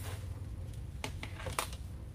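Light rustling and a few sharp clicks as a wreath of artificial lemons and greenery on a metal basket base is handled and turned on a work table, over a low steady hum.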